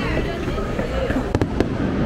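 Aerial fireworks bursting overhead, with three sharp cracks in quick succession about one and a half seconds in, over the voices of a watching crowd.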